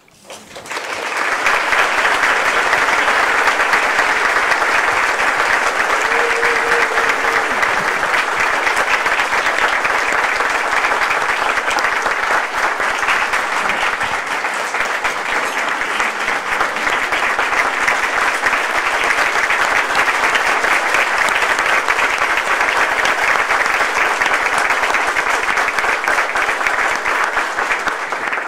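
Audience applauding: a long, steady round of clapping that swells up within the first second and dies away at the very end.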